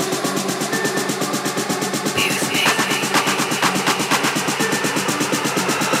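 Organic downtempo electronic music with a quick, steady percussion pattern over sustained low tones, without vocals.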